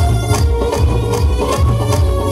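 Live band music: electronic keyboards holding sustained notes over a steady beat of about two strokes a second, with tabla drums. No voice.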